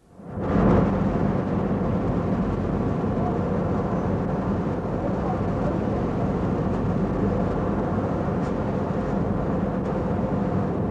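Steady, loud industrial plant noise from the soda ash works, a continuous rushing roar with a low machinery hum under it. It starts abruptly about half a second in.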